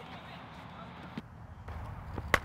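Quiet outdoor background noise at the practice ground, with one faint short knock about a second in.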